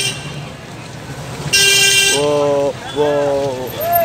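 Horns tooting over a steady traffic hum: a short shrill blast about a second and a half in, followed by lower, steadier toots.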